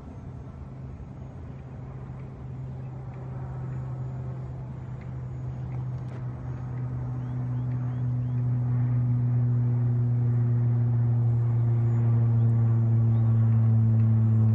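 Brushless electric motor and 6x4 propeller of a small foam-board RC trainer plane, droning steadily in flight and growing louder as the plane comes nearer.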